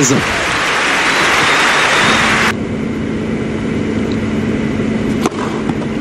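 Crowd applauding on a tennis court, stopping abruptly about two and a half seconds in. After that comes a quieter stretch over a low steady hum, with a single sharp strike of racket on ball near the end.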